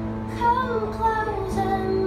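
Live song: two acoustic guitars played together, with a woman singing; her voice comes in about half a second in over the held guitar notes.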